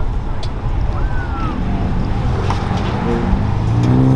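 Street traffic with a low engine rumble; about three seconds in, a passing car's engine note grows louder as it comes closer.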